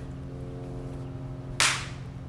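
A single sharp slap about one and a half seconds in, a hand striking a face, over a faint steady hum.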